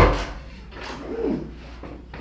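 A door bangs shut or its latch clacks sharply once, at the very start, with a brief ring in the small room. Faint voices follow about a second later.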